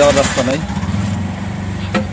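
Auto-rickshaw engine running steadily, a low even hum with a fast pulsing rattle, heard from inside the passenger cab.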